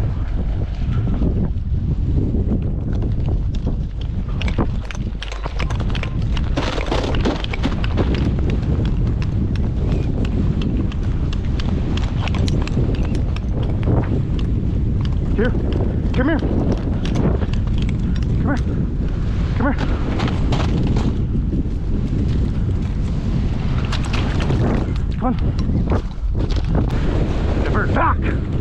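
Wind buffeting the microphone in a steady rumble, with a dog's irregular splashing steps through shallow river water.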